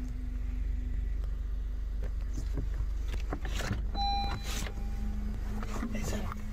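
Car engine idling, heard from inside the parked car as a steady low hum, with a few faint clicks or rustles in the middle.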